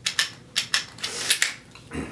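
A run of sharp plastic-and-metal clicks, with a short scrape about a second in, as a Smith & Wesson M&P Shield 9 mm pistol is worked into a Blackhawk holster clipped onto a backpack chest strap.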